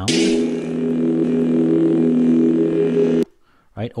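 Sith lightsaber sound effect: a bright burst as the blade switches on, then a steady low electric hum that cuts off suddenly after a little over three seconds.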